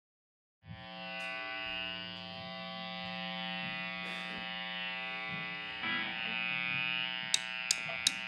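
A quiet, steady buzzing drone from the band's amplified instruments, one held sound with many overtones that begins after a brief silence. Near the end, two sharp clicks, drumsticks counting in the song.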